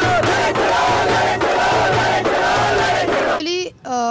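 A crowd of protesters chanting a rallying slogan together, loud and rhythmic, cutting off suddenly a little over three seconds in.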